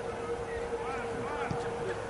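Scattered distant voices shouting and calling across an open football stadium, none of them clear words, over a steady humming tone.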